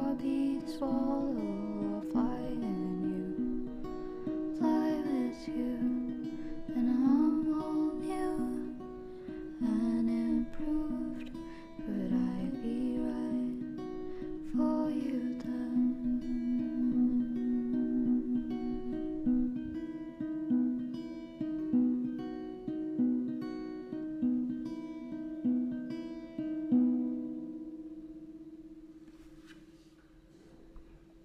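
Acoustic guitar music with a gliding sung melody over it for roughly the first half. The guitar then repeats one note at an even pace, and a last note rings out and fades away near the end.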